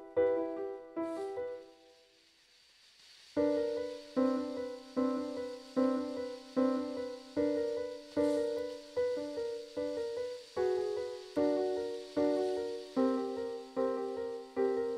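Playback of a composition in a piano sound: repeated block chords, each struck and left to die away. A pause of over a second comes near the start, then the chords resume at a slower pace, a little more than one a second.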